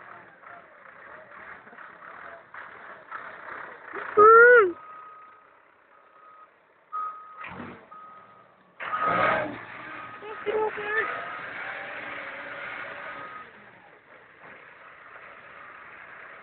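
Manitou telehandler's reversing alarm beeping on and off at one steady pitch over the machine's low running noise. A loud, short cry rises and falls in pitch about four seconds in, just before the beeping starts, and there is a second loud burst about nine seconds in.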